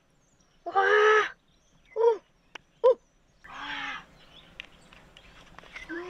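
A few harsh, caw-like animal calls: a long one about a second in, two short falling ones around two and three seconds, and a lower, longer one near four seconds.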